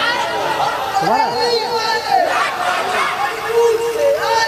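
Men's voices talking over one another close to the stage microphone: loud, unintelligible chatter rather than recitation.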